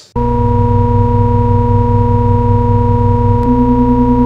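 Loud electronic drone: a steady buzzing synthesized hum over a pulsing low undertone, starting abruptly. About three and a half seconds in, the low pulse drops away and the tone takes on a fast wobble.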